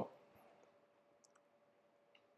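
Near silence: room tone with a faint steady hum and two or three faint clicks of the computer's pointer controls as the browser window is dragged narrower.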